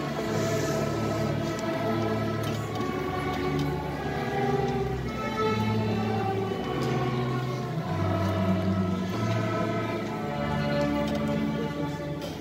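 A student string orchestra of violins, cellos and double basses playing a slow passage in held notes, with the bass line changing note about once a second.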